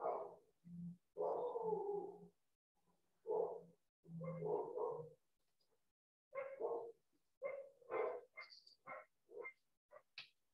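A dog barking repeatedly in separate bursts, each cut off by silence. The bursts are longer in the first half and come quicker and shorter in the second half.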